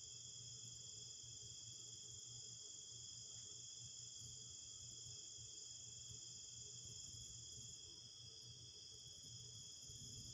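Faint, steady trilling of crickets in a continuous night chorus, with a low steady hum underneath.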